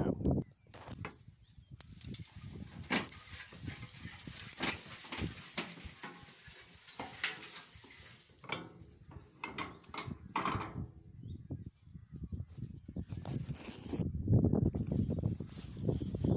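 Dry grass cuttings rustling and sliding out as a wheelbarrow made from a half-cut barrel is tipped and emptied onto a heap. Many small crackles and clicks come through, with louder handling knocks of the barrow near the end.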